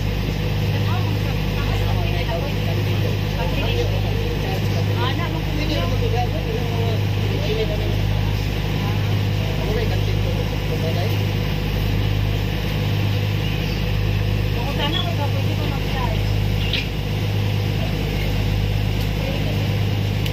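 Ferry's engines running steadily, a continuous low drone with a slight slow throb, heard on board the moving vessel, with faint voices behind it.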